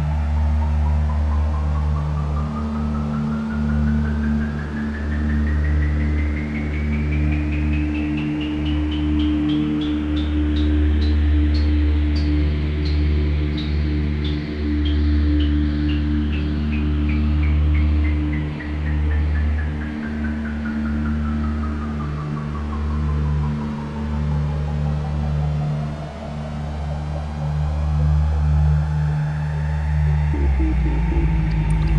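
Generative ambient music on a modular synthesizer: sustained low drones beneath a quickly pulsing tone that sweeps steadily up in pitch for about twelve seconds, then back down over the next twelve, while a second, softer tone glides down early on and rises again near the end.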